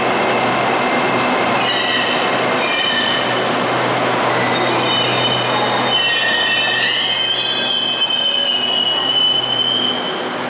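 SRT Red Line electric multiple-unit train (Hitachi AT100) running alongside the platform and braking to a stop. A steady rumble is joined by high-pitched squealing that comes and goes from about two seconds in and is loudest, shifting in pitch, in the last three seconds as the train halts.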